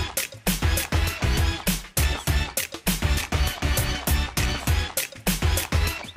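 Background music with a heavy, steady beat.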